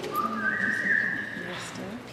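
A high, steady whistle-like tone held for about a second and a half, stepping up in pitch twice before it stops, over quiet murmured speech.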